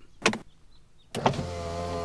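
A short click, then from just over a second in a steady electric whirr of a cartoon convertible car's powered roof folding down after its red button is pressed.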